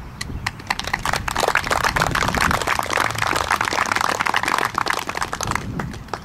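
A small audience applauding: scattered claps start just after the beginning, build to a full round of applause within about a second, and thin out near the end.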